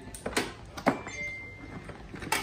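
A few sharp clicks and knocks as RCA cables and a metal AV switch box are handled and a plug is fitted, the sharpest a little under a second in, followed by a brief faint high tone.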